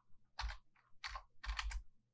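Computer keyboard typing: about five separate keystrokes at an uneven pace, spelling out a terminal command.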